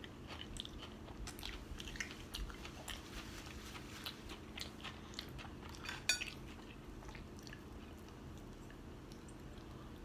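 A person chewing a mouthful of cooked vegetables, with soft wet mouth clicks scattered throughout. A short, sharper clatter comes about six seconds in.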